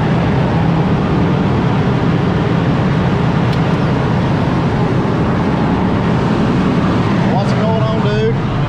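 A John Deere cotton picker running steadily while harvesting, heard from inside its cab as a loud, even, low-pitched drone.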